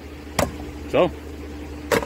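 Two sharp clicks about a second and a half apart: hard plastic bird-feeder parts knocking together as the feeder is handled and its roof is set on.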